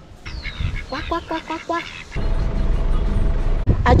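Ducks quacking, a quick run of about six quacks about a second in, with a couple of high falling whistles over them. Then a steady low wind rumble on the microphone.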